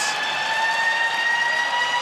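Arena goal horn sounding one long note that rises slightly in pitch, over crowd noise, marking a home-team goal.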